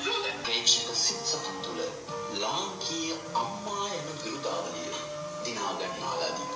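Soundtrack of an old television drama clip playing from a projector: a voice speaking over background music.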